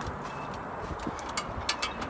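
Footsteps and handling noise as someone walks a few paces outdoors, with a few sharp clicks near the end.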